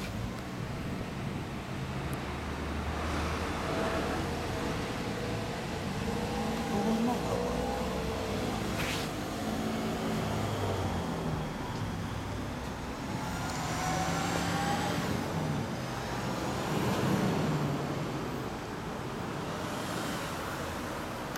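Street traffic passing by, with vehicles rising and fading and a high whine swelling and falling away in the middle, and voices in the background.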